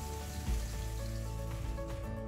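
Background music of slow held notes over a faint sizzle of ground onion-tomato masala frying in oil in a kadai.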